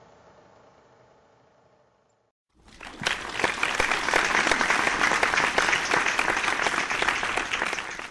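Faint room tone, then about two and a half seconds in an audience breaks into applause, loud and steady, many hands clapping together.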